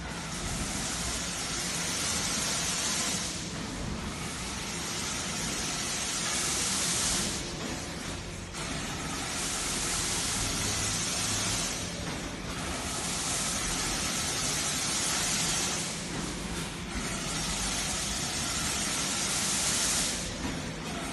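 Machinery running on a gabion wire-mesh production line: a steady low hum under a loud hiss that swells and drops back about every four seconds.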